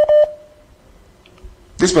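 Two short electronic telephone-line beeps in quick succession, then an open phone line with only faint hiss: the caller is connected but says nothing.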